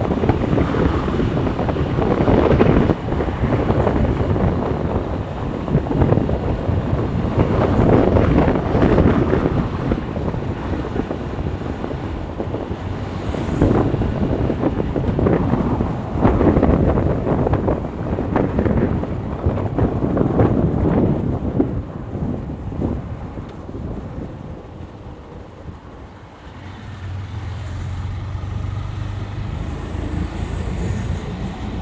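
Wind buffeting a microphone on a moving vehicle, a loud rushing noise that swells and drops every couple of seconds. It eases a few seconds before the end, where a low steady hum comes in.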